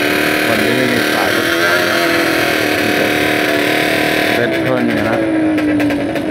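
Two-stroke reed-valve drag motorcycle engine revved hard and held high while staged at the start line, with a steady raspy note. About four seconds in the revs come off and the pitch slides down.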